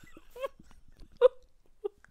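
A person's stifled laughter: three short, squeaky gasps about a second apart, the loudest in the middle.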